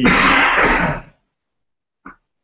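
A person's short, breathy laugh close to the microphone, lasting about a second and cutting off suddenly.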